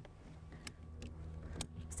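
A few faint clicks from a red motorcycle tie-down strap and its hook being handled as it is readied for release, over a low steady hum.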